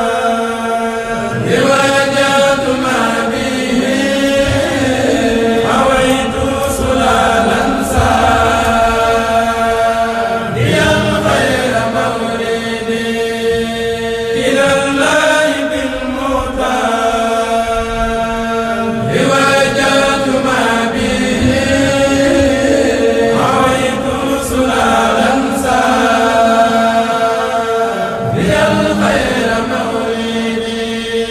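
A kourel, a group of Mouride men, chanting a qasida (Arabic devotional verse) together in long melodic phrases. A steady held note sounds beneath the moving melody.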